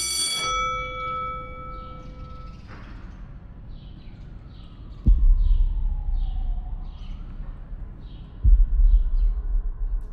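A ringing, bell-like tone dies away in the first couple of seconds. Then comes quiet outdoor air with faint repeated high chirps. Two sudden bursts of low rumble from wind buffeting the microphone come about five and eight and a half seconds in.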